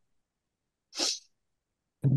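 A single short hiss from a person, about a second in and lasting about a third of a second.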